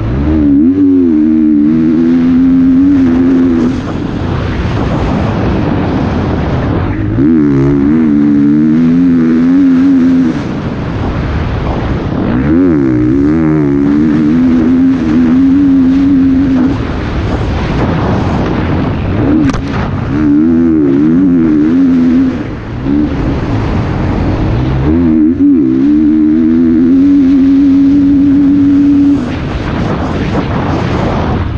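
Motocross bike engine ridden hard through a sand track, revving up and holding high revs along the straights, then backing off for the turns five times. Heard from the rider's helmet-mounted camera.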